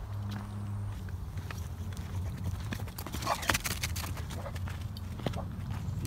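Footsteps hurrying along a packed dirt trail, a steady run of short footfalls over a low rumble.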